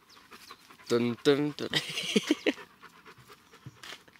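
A Doberman panting.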